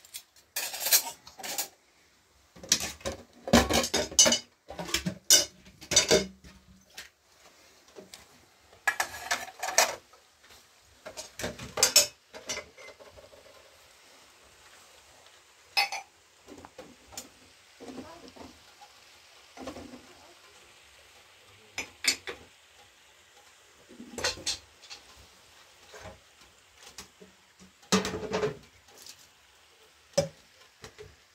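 Dishes, glass cups and metal utensils clinking and clattering as they are handled and set down, in irregular bursts of sharp knocks with a quieter stretch midway.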